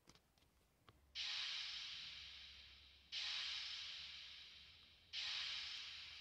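A looped 'Fx' noise-effect sample from a beat-making pad app: a hissing hit that starts suddenly and fades away, repeating three times about two seconds apart.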